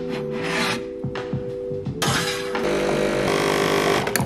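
A ceramic mug scrapes briefly against a shelf. From about halfway, a home espresso machine runs with a harsh, buzzing mechanical noise. Background music with sustained notes plays under it.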